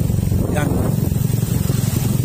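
Small motorcycle engine running steadily at low speed, close by, with a fast, even putter.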